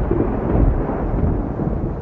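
Rumble of thunder, deep and steady, slowly fading.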